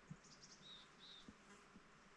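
Near silence: faint forest ambience with a soft steady hiss. Two short high chirps come about a second in, and there are a few soft low taps.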